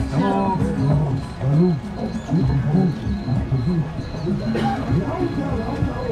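Theme-park boat ride soundtrack: music with voices, and in the second half an evenly repeating high chirp about three times a second.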